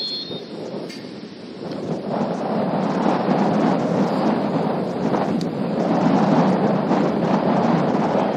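Wind buffeting the microphone: a loud, rough rushing rumble that swells about two seconds in and stays heavy. A brief steady whistle blast sounds at the very start.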